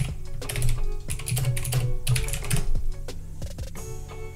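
Typing on a computer keyboard: a quick run of keystrokes that thins out near the end, over background music with held notes.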